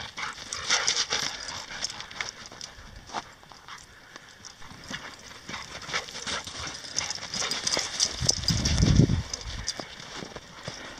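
Feet crunching in snow: a quick, irregular run of short crunches from the dogs' paws and the walker's steps. A louder low rumble comes in about eight seconds in and lasts over a second.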